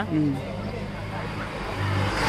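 A motor vehicle engine running with a steady low hum, growing louder near the end.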